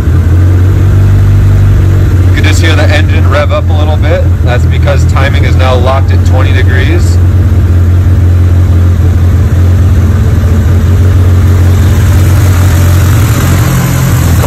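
Stroked 2.2-litre Tomei SR20DET four-cylinder engine idling steadily with a deep, even hum, its ignition timing locked at 20 degrees for a timing-light check.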